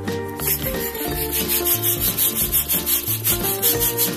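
Electric balloon pump blowing air into a latex balloon: a pulsing hiss of rushing air starting about half a second in, with background music underneath.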